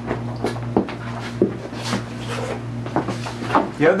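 A paper printout being handled, with a string of short rustles and light clicks, over a steady low electrical hum.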